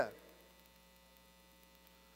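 Faint steady electrical hum, near silence, after the end of a man's spoken word dies away in the first moment.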